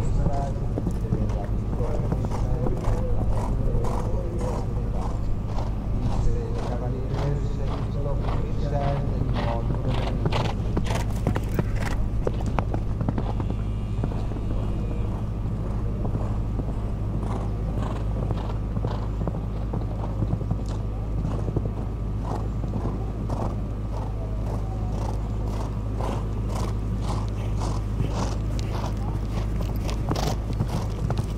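A horse cantering on a sand arena, its hoofbeats coming as a steady run of short strokes, over a steady low hum.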